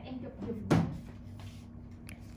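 A single short, sharp knock, the loudest thing here, about two thirds of a second in.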